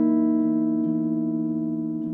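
Clean electric guitar chord ringing and slowly fading, with a lower note changing about a second in.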